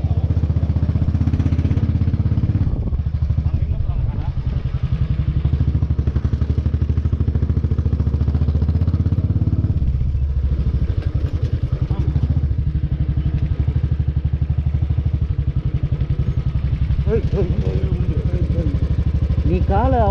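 Royal Enfield motorcycle engine running at low speed with an even pulsing beat, the bike rolling slowly.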